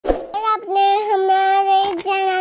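A child singing long, steady held notes, after a short thump at the very start.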